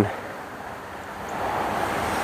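Outdoor background noise: a steady rushing sound that swells gradually from about a second in.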